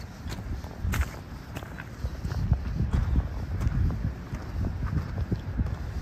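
Footsteps crunching on loose gravel, a series of irregular short crunches, over a low rumble on the microphone.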